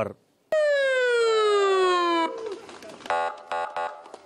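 Ambulance siren: one loud wail starting about half a second in, falling steadily in pitch for under two seconds, then cutting off abruptly, followed by quieter short pulsing tones near the end.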